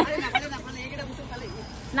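Faint background chatter of voices over a steady low hum, after a spoken phrase trails off.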